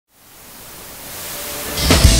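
Television static hiss used as an intro effect, swelling steadily louder, with a thump and the start of a rock music track right at the end.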